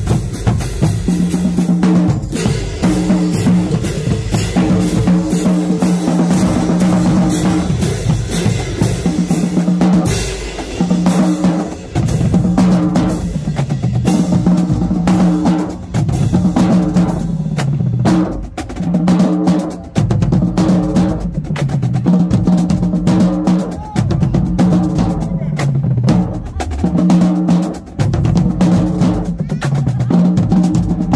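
Marching band drumline playing a cadence: pitched bass drums beat out a repeating pattern under rapid snare and tenor drum strokes. The rhythm is steady, with short breaks every few seconds.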